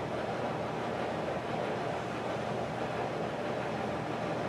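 Steady background noise in the room, an even hiss and hum, unbroken.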